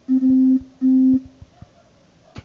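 A woman humming two short, steady notes at the same pitch, each about half a second long, the second following a brief gap.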